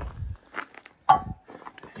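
A person walking a few steps on dirt and leaf litter while carrying the camera, with short thuds and knocks; the sharpest comes about a second in.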